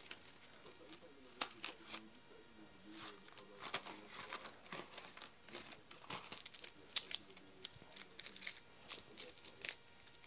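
Cardboard-and-plastic pencil packaging being opened by hand: irregular crinkling and tearing with scattered sharp crackles, the loudest a little before and around seven seconds in.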